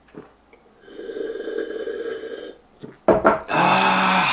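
A man gulping down the last of a mug of beer, with a steady sound lasting about a second and a half as he drinks. About three seconds in, after a short pause, comes a loud, raspy 'kaaah' of relief as he finishes the mug.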